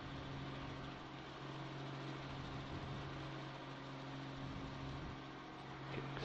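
A steady low mechanical drone holding one constant low pitch, unchanging throughout.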